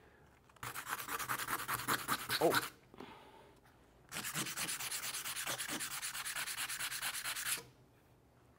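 Sandpaper rubbed hard back and forth over laminate flooring samples in two bursts of quick, even strokes, with a short pause a little before the middle. It is a sandpaper scratch test, and the samples' finish scratches badly.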